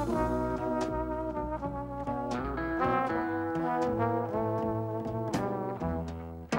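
A traditional jazz band playing live, with a trombone carrying a sustained melody line, backed by drums whose cymbal strikes cut through several times.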